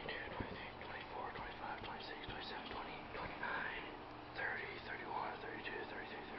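A man whispering under his breath, counting quietly.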